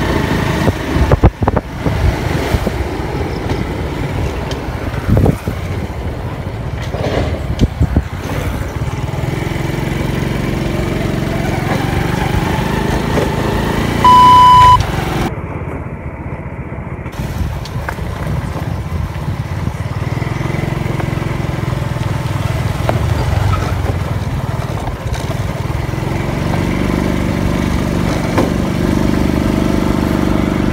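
Motorcycle engine running as the bike rides along a rough road, its pitch rising and falling with speed. About halfway through, a loud, short, high beep.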